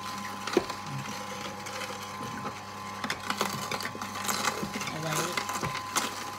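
Electric juicer running with a steady motor hum, crushing produce with scattered cracks and clicks.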